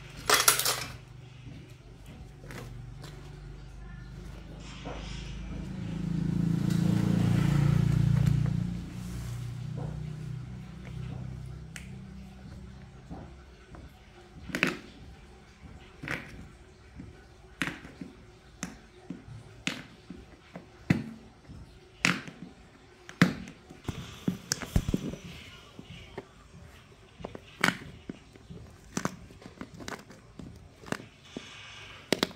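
Metal clicks as a can lid is levered open with pliers, then a low rumble swells and fades over several seconds. From about halfway, sharp clicks and snaps roughly once a second as staples are pried out of a motorbike seat's plastic base.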